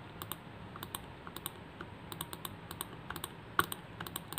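Quick, irregular light clicks of a computer mouse, several a second, some in close pairs, as images are stepped through one by one in an image viewer.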